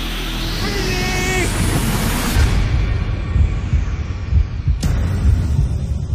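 Broadcast tension sound effect: a rising swish over the first two seconds, then deep pulsing bass, the build-up before a run begins.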